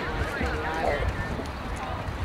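Distant spectators' and players' voices calling out across an open sports field, several overlapping, over a low wind rumble on the microphone.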